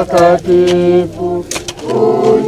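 A group of voices singing unaccompanied in long held notes, with a short break about a second and a half in.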